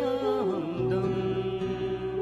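A man singing a slow melody into a handheld microphone over instrumental accompaniment; about half a second in his voice slides down into a long held note.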